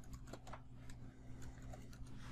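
Faint computer keyboard typing: an irregular run of quick key clicks as a short sentence is typed.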